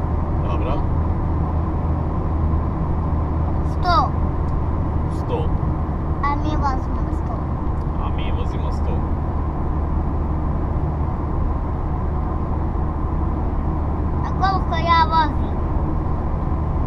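Steady road and engine noise inside the cabin of a car driving on a highway, a constant low rumble and hum, with a few brief snatches of voices over it.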